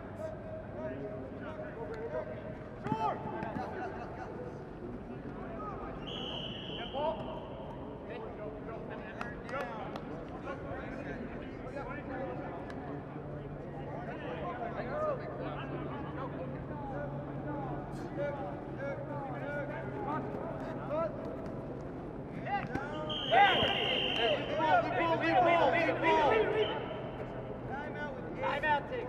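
Players' voices calling and chatting across an open field, with two short, steady, high referee's whistle blasts: one about six seconds in, the other near the end, alongside the loudest shouting.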